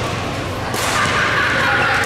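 Badminton racket hitting the shuttlecock hard, a single sharp crack about three-quarters of a second in, ringing out in a large hall with voices in the background.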